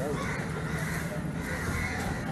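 Outdoor ambience at a street and stone staircase: a steady low hum with people's voices in the background and a few short higher calls over it, about a quarter second in and again near the end.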